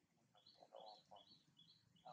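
A small bird chirping faintly and repeatedly, a short high note about three times a second.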